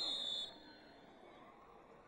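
A referee's whistle: one short, high blast of about half a second at the very start, over a faint stadium crowd murmur.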